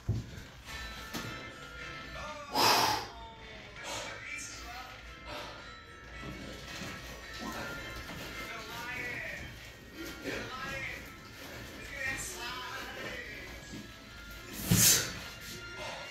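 Speech and music from a stream playing in the room. It is broken twice by a short, loud noisy burst, about three seconds in and again near the end.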